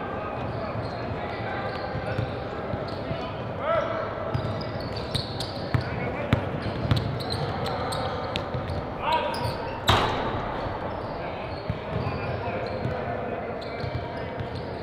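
Basketball practice in a gym: basketballs bouncing on a hardwood floor and voices echoing around the hall, with a sharp bang about ten seconds in.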